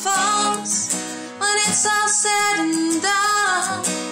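A woman singing to her own strummed acoustic guitar, in three sung phrases with short breaks between them.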